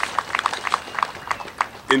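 A rapid, irregular series of sharp clicks or taps, several a second.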